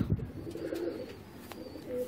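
Domestic pigeon cooing, a low coo, with a light click about one and a half seconds in.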